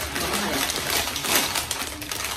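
Plastic crisp bag of Munchitos potato crisps being pulled open and crinkled in the hands, a dense, continuous crackle.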